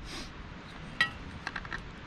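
A single sharp metallic clink about a second in, ringing briefly, then a few faint ticks, as the CZ 1012 shotgun's barrel and parts are handled for assembly.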